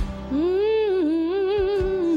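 A woman singing a slow gospel melody into a handheld microphone, with wavering vibrato, over a sustained instrumental accompaniment. Her voice enters about a third of a second in, after a brief click at the very start.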